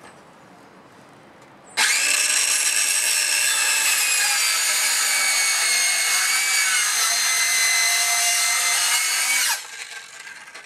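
Cordless circular saw cutting into a 2x4 post. It starts suddenly about two seconds in, runs steadily with a high whine for about eight seconds, then winds down near the end.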